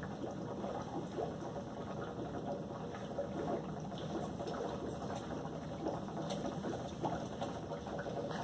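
Methane from a lab gas jet bubbling through soapy water in a tub: a steady bubbling with many small pops as the foam builds.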